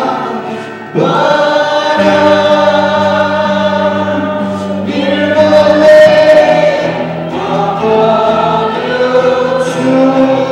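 Live Christian worship song sung in Nepali: a male lead voice with backing singers over acoustic guitar, electric guitar and keyboard, holding long sung notes. The sound dips briefly just before a second in, then the full band comes back in.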